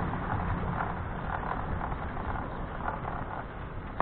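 Steady rushing noise of wind and rolling travel from a camera moving along a street.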